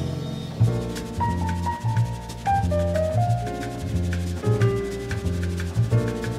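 Bossa nova jazz recording: piano melody over a repeating bass line and a soft swishing drum rhythm.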